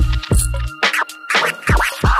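Chill hip hop instrumental beat: a steady kick drum with sustained bass notes and sharp snare hits, with quick turntable-style scratches sweeping up and down in pitch in the second half.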